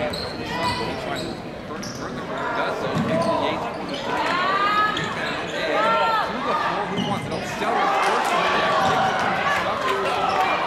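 A basketball being dribbled on a hardwood gym floor, with sneakers squeaking in a few short bursts about halfway through, over the chatter of spectators' voices.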